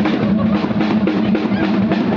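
Live rock band playing, the drum kit loudest with a fast run of kick and snare hits over a steady held low note.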